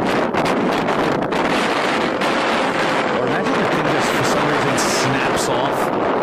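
Strong wind blowing across a camera's microphone high on a skyscraper ledge. It makes a loud, steady rushing noise that keeps on without a break.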